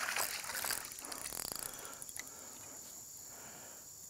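Insects chirring steadily at a high pitch in the background, with a few faint clicks in the first second and a half.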